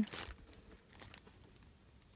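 Faint crinkling and light ticks of a hand on a foil Faraday pouch wrapped in plastic tape, with a short rustle at the start. No ring or vibration comes from the phone sealed inside, which is being called.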